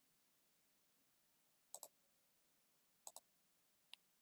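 Computer mouse clicks: two quick double clicks and then a single click, in an otherwise near-silent room.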